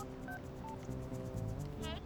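Phone keypad tones as a number is dialled: three short beeps in the first second, over background music.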